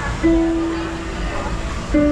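Musical piano stairs: a child's step sets off a sustained piano note about a quarter second in, which rings on and fades slowly, and the next step starts a slightly lower note right at the end.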